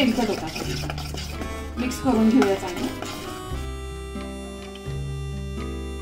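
Besan batter being stirred in a bowl with a spoon after a pinch of soda has gone in, over background music whose steady tones come to the fore in the second half.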